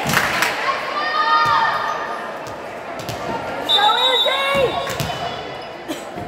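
A volleyball bouncing with sharp thuds on a hardwood gym floor, several times at irregular spacing, mixed with girls' voices calling out. A short, steady, high whistle sounds about the middle.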